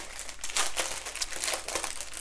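Small plastic packets of diamond-painting drills crinkling and rustling in the hands, with an irregular crackle.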